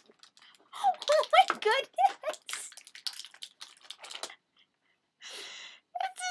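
A woman's voice murmuring and giggling under her breath, then light clicks and taps of small plastic toy playset pieces being handled, and a short hiss near the end.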